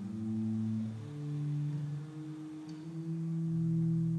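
Electric bass playing slow, long-held low notes that ring on and overlap, a new note coming in about every second.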